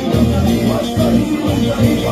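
Amplified live gospel music: a choir and lead singers singing through microphones over a band with a steady bass beat.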